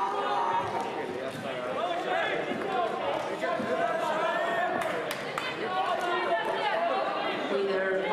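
Several voices calling out at once, echoing in a large hall, with a sharp knock about five seconds in.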